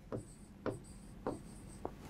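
Marker pen writing on a whiteboard: four short, faint strokes about half a second apart.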